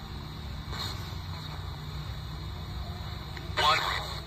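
RadioShack 12-587 radio sweeping the FM band as a ghost box: steady hiss and a low rumble, a short blip about a second in, and a brief fragment of a broadcast voice near the end.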